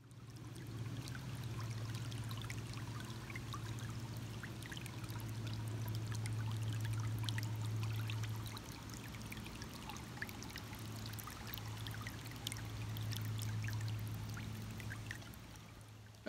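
Shallow stream trickling and splashing over stones and leaves, a steady flow of small bubbling ticks, with a steady low hum underneath. The water fades out near the end.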